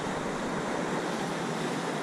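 Ocean surf breaking and washing up a sandy beach, a steady even rush of noise.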